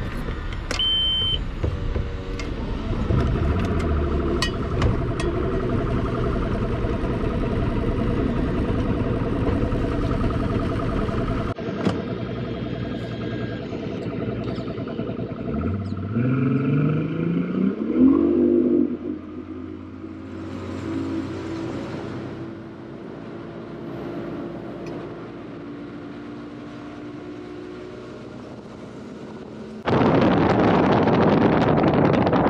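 Mercury Optimax two-stroke direct-injection outboard running at low speed, then opened up about halfway through: its pitch climbs smoothly over about three seconds as the boat accelerates, then holds steady at speed. The engine is running on a freshly replaced fuel line, and the climb shows no bogging.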